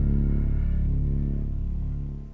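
Closing chord of a mellow pop ballad played by a band with synth bass, piano and string quartet. The chord is held over a deep, sustained bass and slowly dies away.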